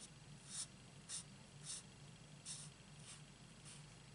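Alcohol marker nib scratching across cardstock in short, repeated colouring strokes, about six in four seconds, faint and high-pitched.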